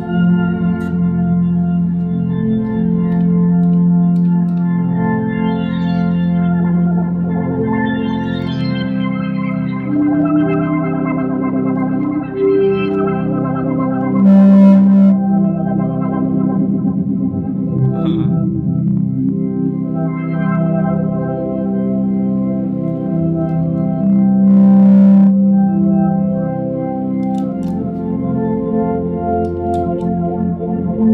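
Looped, pitch-shifted notes from a one-string shovel instrument played through a board of pitch-shifter and effects pedals, making a sustained organ-like chord progression whose chords change every few seconds. Two brief swells of hiss rise over it, about halfway through and again near the end.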